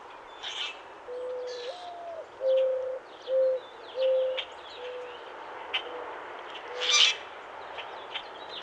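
A bird calling a series of low hooting notes: a long one, one that rises and falls back, then about six shorter notes that fade away. Sharper, higher bird calls sound above it, the loudest one shortly before the end.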